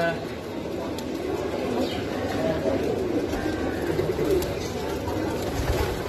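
A flock of domestic pigeons cooing together in a crowded loft, many overlapping coos at a steady level.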